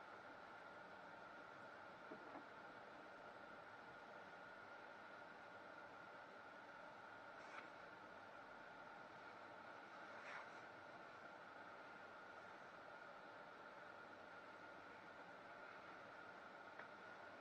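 Near silence: a faint steady hiss with a thin high tone, and a few faint ticks.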